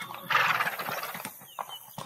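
A horse sound effect: one call of about a second that starts shortly after the beginning and then trails off.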